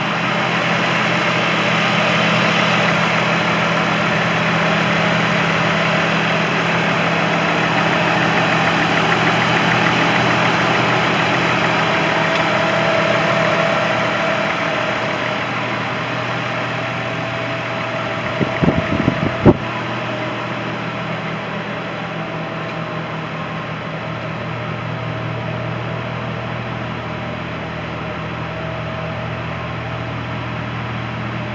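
2005 Chevy Trailblazer's 4.2-litre inline-six idling steadily, heard first close at the open engine bay and then quieter and duller from behind the vehicle at the exhaust. A few sharp knocks come about two-thirds of the way through.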